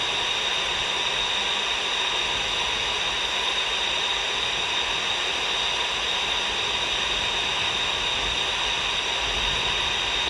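Steady static hiss from a C. Crane Skywave SSB 2 portable radio tuned to the 124.100 MHz air band, with no voice on the frequency.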